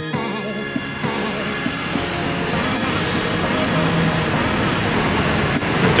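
Background music trailing off in the first second, then a steady noisy ambience of passing road traffic and faint voices that grows slightly louder.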